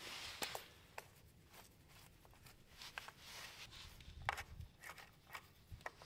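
Faint, scattered clicks and ticks of a hex driver working on metal terminal bolts as motor phase wire lugs are fastened to an e-bike motor controller, the sharpest a few seconds in and near the end.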